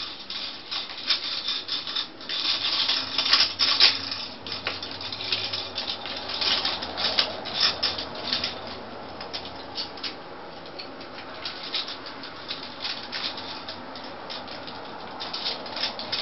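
Plastic bracelets clicking, rattling and scraping on a PVC playstand post as two macaws, one a blue-and-gold, pick and push at them with their beaks. Irregular taps and clicks, in quick clusters, with no calls.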